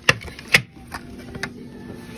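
Three sharp clicks, the loudest about half a second in, from a jewelry tray being handled in a glass display case.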